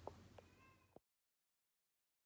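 Near silence: faint room tone with a few soft clicks, then dead silence from about a second in.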